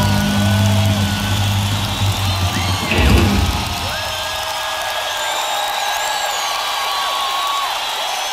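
A live rock band plays its closing chords, ending on a last loud hit about three seconds in; then the arena crowd cheers, whistles and applauds.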